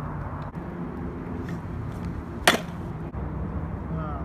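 Pro scooter rolling on asphalt with a steady low rumble, then one sharp clack about two and a half seconds in as the scooter comes down hard during a flatland trick.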